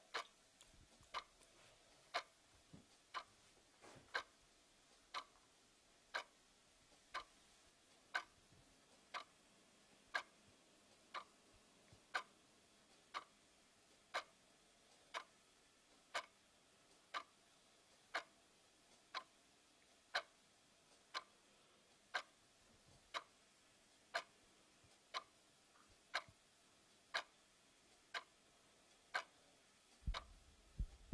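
A clock ticking faintly and steadily, about once a second.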